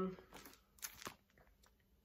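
Plastic pattern sleeve crinkling as it is handled, with a couple of soft crackles about a second in.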